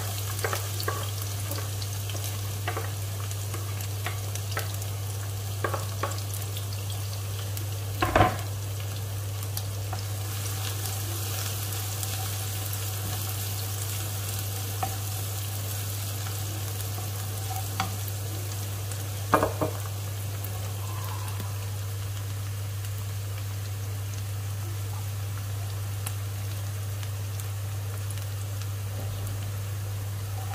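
Chopped garlic and shallots sizzling steadily in hot oil in a nonstick frying pan, stirred with a wooden spatula, with scattered small clicks and a steady low hum underneath. Two louder knocks come about eight and nineteen seconds in.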